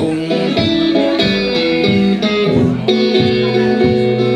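Stratocaster-style electric guitar playing a blues passage: picked notes and chords, each ringing on for a moment before the next.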